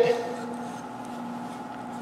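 Quiet room tone with a steady low hum and no distinct handling sounds.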